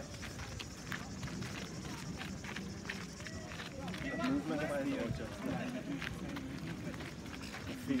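Footsteps crunching steadily on a gravel-and-sand surface, with people's voices around them and a man saying a few words about halfway through.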